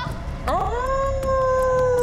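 A single long wolf-style howl, rising quickly about half a second in and then held at a steady pitch.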